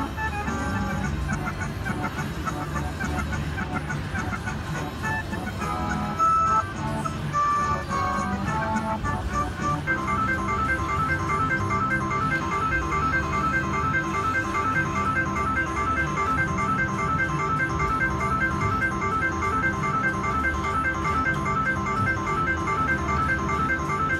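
Slot machine win celebration: a jingle and rapid credit count-up chimes while a large win tallies on the meter. From about ten seconds in, the chimes settle into a fast, evenly repeating pattern over a low background din.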